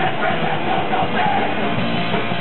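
Thrash metal band playing live: electric guitar and drum kit, loud and continuous.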